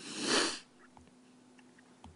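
A man sniffing once through his nose at the start, lasting about half a second, the sniff of someone holding back tears.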